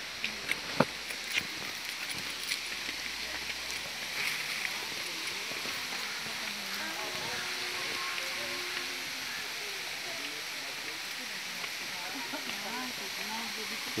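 Steady rush of running water, with faint voices in the distance and a few light clicks in the first seconds.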